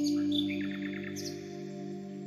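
Birds chirping over soft, sustained ambient music: a quick run of chirps in the first second, then the held tones carry on alone.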